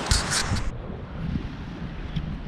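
Wind buffeting an outdoor camera microphone, a noisy low rumble. A brighter hissing stretch with a few short crackles cuts off abruptly under a second in, leaving a duller rumble.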